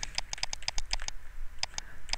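Rapid, uneven run of light clicks from a computer input device, about seven a second, with a brief pause late on.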